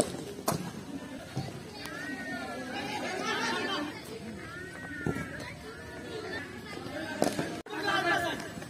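Children's voices chattering and calling across an open practice ground, with a few sharp knocks: two about half a second apart at the start, another about five seconds in and one near the end.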